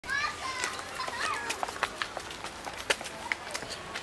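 Children's high voices calling and chattering in the background, mostly in the first second and a half, with scattered sharp taps throughout.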